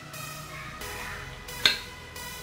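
Instrumental background music, with one sharp metallic clink about one and a half seconds in: a metal spoon striking the perforated metal tray inside a cooking pot.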